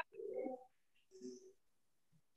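A bird's low call, heard faintly twice: two short notes about a second apart.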